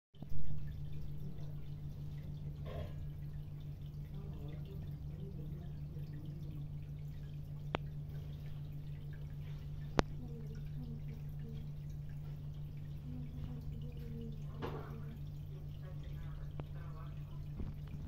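Steady low hum of aquarium equipment with water trickling and dripping in the tank. There is a loud knock right at the start and two sharp clicks later on.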